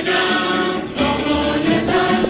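A choir singing a hymn for the entrance procession of a Mass, with several voices together.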